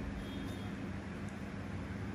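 Steady background hum and hiss, with no distinct events.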